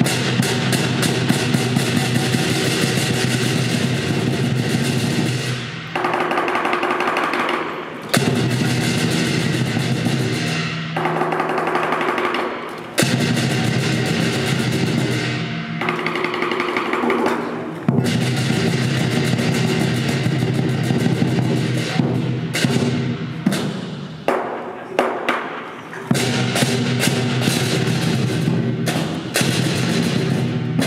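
Traditional lion dance percussion: the lion drum beating fast, loud rolls with cymbals and gong crashing along, the rhythm breaking and changing pattern every few seconds.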